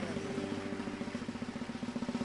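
Church band playing: a sustained chord held under a rapid, even drum roll.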